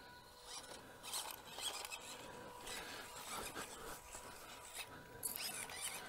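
Faint whirring of a WPL B24 1/16-scale RC crawler truck's small 130-size electric motor and gearbox as it crawls slowly over muddy ruts, with scattered light clicks and scratches.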